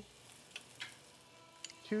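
Diced onion and garlic sizzling faintly in olive oil in a sauté pan, with a few light clicks of a spoon stirring them.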